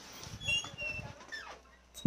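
Faint, high-pitched squeaking cries from a small animal: several short calls that glide in pitch, one falling clearly about two-thirds of the way through.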